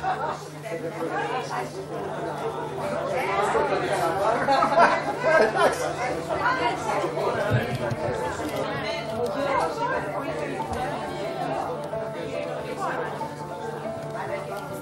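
Several people talking over one another, the mixed chatter of a small group gathered in a hall, with some music underneath.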